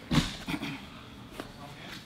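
A short, soft thump with cloth rustle near the start as a person in a gi shifts from sitting to kneeling on a foam mat, followed by a brief vocal sound and a small click.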